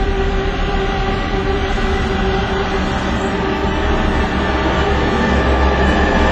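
Dramatic film soundtrack: held tones over a loud, steady, deep rumble.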